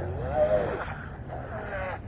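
Brushless Traxxas 380 electric motor of an RC catamaran whining as the boat runs away across the water. Its pitch glides up and down with the throttle, rising toward the end.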